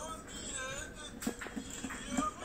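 Short, high-pitched whining vocal sounds that glide up and down in pitch, played back from a video through a tablet's speaker.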